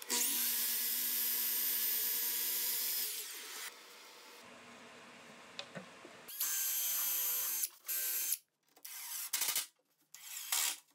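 Sliding miter saw motor running steadily, then winding down about three and a half seconds in. After a pause a power tool runs again for over a second, and near the end a cordless drill runs in a few short bursts, driving screws.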